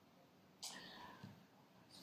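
Near silence: room tone, with one short faint breath from the speaker a little over half a second in.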